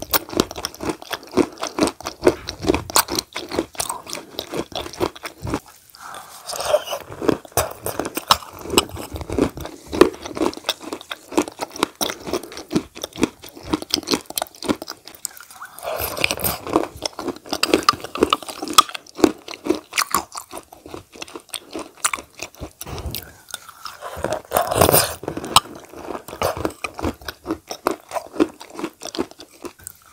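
Close-miked chewing and mouth sounds of a person eating a soft whitish food from a spoon: a dense run of small clicks and crunches, broken by short pauses about six, fifteen and twenty-three seconds in.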